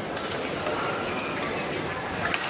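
Steady ambience of a large indoor sports hall: indistinct spectators' chatter echoing, with a faint tick near the start.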